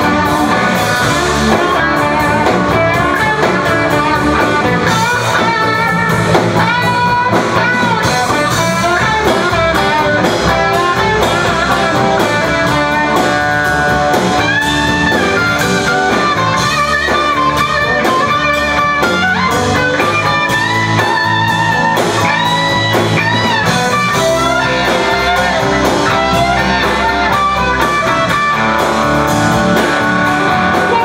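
A live rock band plays an instrumental passage: an electric guitar plays lead lines that bend in pitch, over drum kit and bass guitar.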